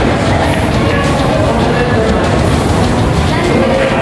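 Loud, steady background din of a busy room: indistinct voices over a constant low rumble.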